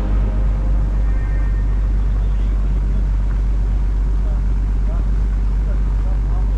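Steady rumble and rushing noise of a river water-taxi boat under way: its engine and the water along the hull, with heavy wind noise on the microphone.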